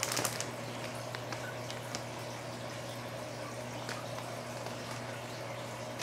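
Plastic bag wrapping being handled, giving a few faint crinkles, most of them in the first half-second, over a steady low hum and hiss.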